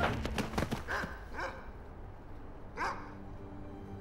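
A dog barking twice, the second bark the louder, after a quick run of sharp clicks or knocks in the first second.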